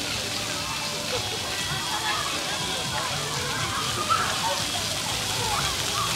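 Splash-pad fountain jets spraying and pattering onto wet pavement, a steady hiss of falling water, with children's voices faintly in the background.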